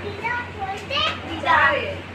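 Children talking in high-pitched voices in short bursts, over a steady low hum.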